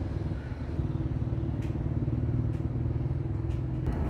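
A motor vehicle engine running steadily at a low pitch.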